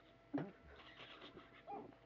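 A young boy's stifled laughter while trying not to laugh: a short burst about a third of a second in and a brief pitched squeak near the end, quiet in between.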